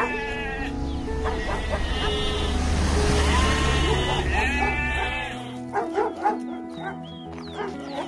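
Sheep bleating several times over background music with a low drone. The drone stops a little past halfway, and a few sharp knocks follow.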